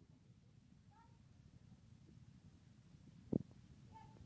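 Quiet hall room tone with a low steady hum. About a second in comes a faint, short, high-pitched squeak-like sound, and near the end a single sharp knock.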